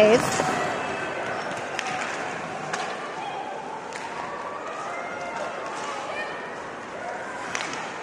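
Ice hockey arena sound during live play: a steady crowd murmur with skates scraping the ice. A few sharp clicks of sticks and puck come through now and then.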